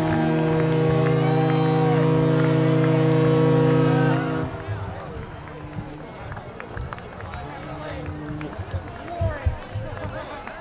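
A band holding a loud, sustained chord that cuts off abruptly about four seconds in; a softer held note lingers until past eight seconds, then crowd noise with scattered claps takes over.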